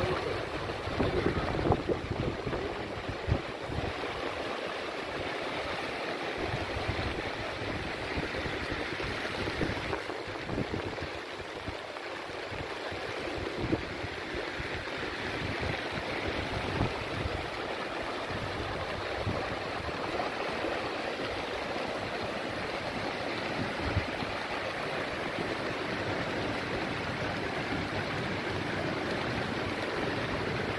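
Floodwater running steadily over a street and plaza, with irregular low rumbles underneath and a few louder moments in the first couple of seconds.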